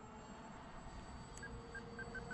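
Faint, steady whine of a twin-motor RC flying wing's two brushless electric motors and propellers flying far off. Near the end, three short, high electronic beeps from the pilot's radio transmitter.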